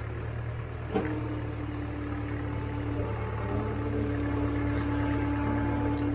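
Engine-driven hydraulic log splitter running with a steady low hum and a steady whine, growing slightly louder. There is a single knock about a second in.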